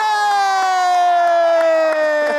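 A studio band's horns holding a long closing note that slides slowly down in pitch, over faint audience noise.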